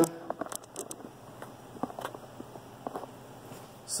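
Soft footsteps and a scattered run of light clicks and knocks as the phone camera is carried and repositioned close to the bench.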